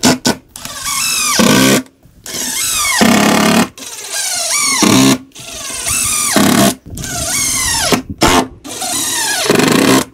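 Cordless impact driver driving screws into a wooden door brace in about six runs of a second or so each. Each run ends with a falling whine as the motor winds down.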